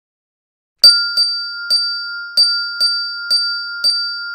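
A small bell struck seven times in quick, uneven succession, starting about a second in, its clear ringing tone carrying on between strikes.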